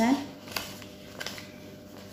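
Paper banknotes being handled and counted by hand: a few soft crisp flicks and rustles of the notes, two of them sharper, about half a second and a second in.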